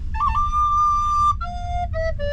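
Wooden recorder playing a short tune: a quick ornament into a long high note held for over a second, then a few shorter notes stepping down in pitch. A low steady rumble runs underneath.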